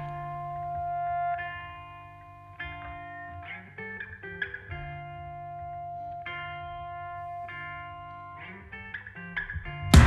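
Electric guitar alone through an effects unit, playing a quiet break in an indie punk song: picked chords ring out and change about every second or two. At the very end the full band crashes back in loud.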